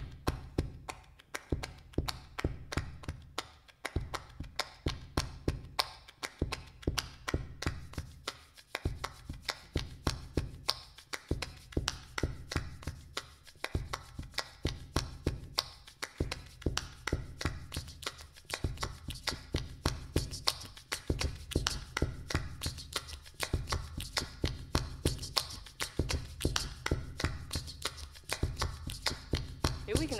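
A repeating, layered percussion groove of rapid tapping and clicking over a low bass figure that shifts every two seconds or so, built up live at the microphone. It grows denser and brighter over the second half.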